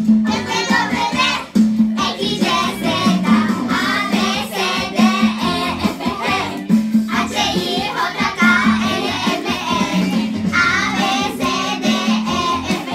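A group of young children singing a song together, in wavering unison, at a fairly loud and steady level.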